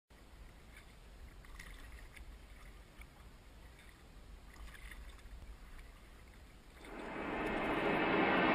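Faint sounds of a canoe being paddled on calm water: a few soft paddle drips and dabs over a low rumble. About seven seconds in, a hissing swell begins and grows steadily louder.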